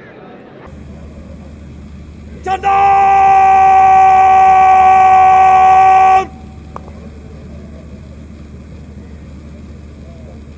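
A brass fanfare: a short note, then a long held chord of about three and a half seconds that cuts off sharply, over a steady low hum.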